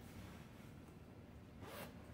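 Zipper on a fabric tote bag being worked by hand: a faint handling sound with one short zip rasp near the end.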